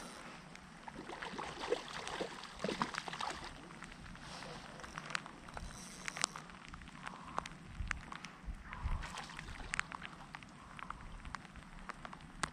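Light rain: raindrops ticking irregularly and scattered over a faint steady hiss.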